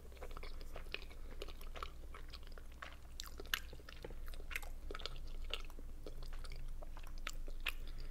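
Close-miked chewing of boiled meat dumplings (pelmeni): soft, wet mouth sounds with many small clicks.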